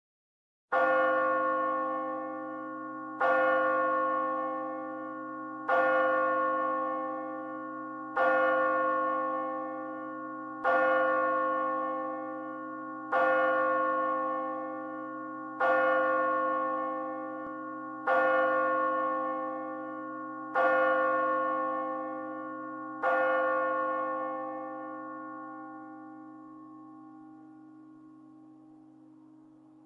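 A single church bell tolled ten times at an even pace, about one stroke every two and a half seconds, all on the same pitch. Each stroke rings on and overlaps the next, and after the tenth the hum fades away slowly.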